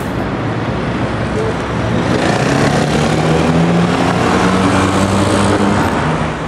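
City street traffic: a steady wash of passing road vehicles and tyre noise, with a low engine hum that swells in the middle.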